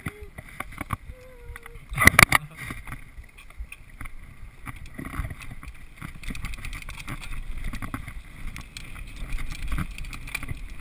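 Downhill mountain bike rolling fast over a dirt trail, heard from a helmet-mounted camera: a steady rumble of tyres on dirt with constant small rattles and clicks from the bike. A loud cluster of clattering knocks comes about two seconds in.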